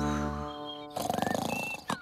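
A held musical chord fades out. About a second in, a cartoon snore follows, a rapid fluttering rattle lasting just under a second.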